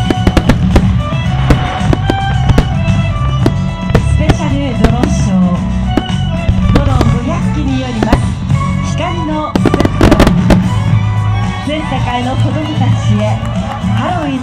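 Aerial firework shells bursting in quick succession, a string of sharp bangs with a dense volley about ten seconds in, over loud music with a voice.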